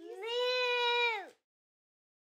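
A single long meow-like animal call that rises at the start, holds steady for about a second, then falls away in pitch and stops.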